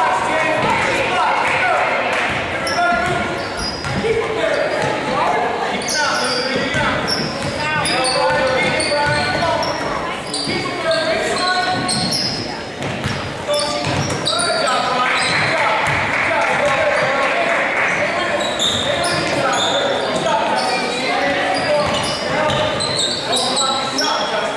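Basketball dribbled on a hardwood gym floor, with sneakers squeaking and indistinct voices of players and spectators, all echoing in a large gym.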